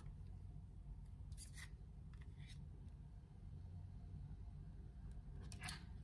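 Oracle cards being handled: a few brief, soft scrapes and slides of card stock over quiet room tone, with one about a second and a half in, another at two and a half seconds, and the last near the end.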